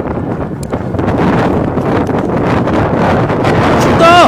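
Wind blowing across the microphone: a loud, steady rush and rumble of wind noise, a little stronger from about a second in.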